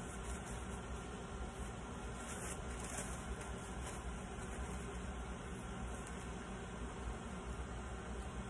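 Faint steady background hum and hiss, with soft rustling from a thin paper napkin being unfolded and laid flat on a table.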